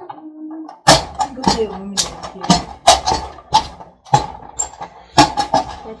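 A wooden turning stick knocking hard against a bowl as thick amala dough is stirred and beaten, sharp knocks about two a second starting about a second in.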